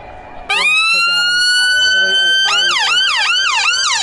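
UK ambulance siren sounding very loud at close range: it cuts in suddenly with a long held tone that rises slightly, then switches about halfway through to a fast up-and-down yelp, about three sweeps a second.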